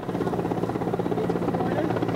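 An engine running steadily: a low hum with a fast, even pulse.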